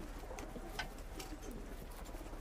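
Faint dove-like cooing in the background over a steady low hum.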